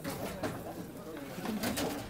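Outdoor street background with faint, indistinct voices and some low calls.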